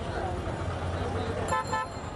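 Busy street background of traffic and crowd voices, with a vehicle horn giving a short honk, in quick pulses, near the end.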